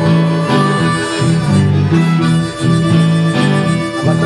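Blues harmonica playing long held notes in phrases over a metal-bodied resonator guitar, live instrumental blues.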